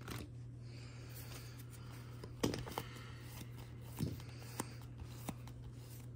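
Baseball trading cards and a foil pack wrapper being handled: a few short rustles and crinkles as a pack is opened and the cards are spread by hand, loudest about two and a half and four seconds in.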